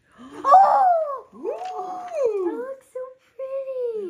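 A young girl's high voice making wordless sing-song sounds in several long, drawn-out notes that slide up and then fall away.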